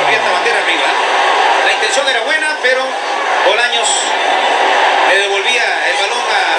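Men's voices over the steady noise of a stadium crowd at a football match.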